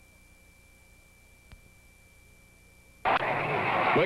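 Near silence in a gap in the old broadcast audio, with a faint steady high-pitched tone and one brief click about halfway through; commentary resumes near the end.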